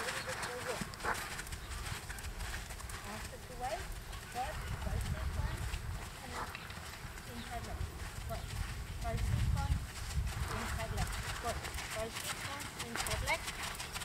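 A horse's hooves striking a sand arena as it walks, under a low rumble that swells twice, about five and nine seconds in.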